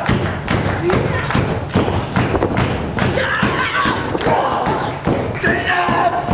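A rapid run of thuds and smacks from wrestlers striking each other and hitting the ring, with wrestlers shouting over them.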